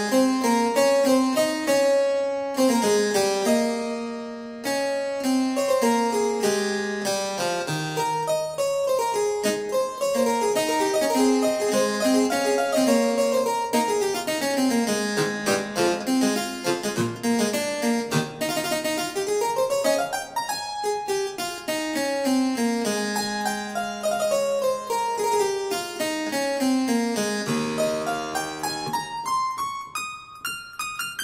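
Sampled harpsichord, the IK Multimedia Philharmonik 2 'Harpsichord Dual Unison' patch, played from a keyboard: chords and fast runs rising and falling across the range, ending in a long upward run.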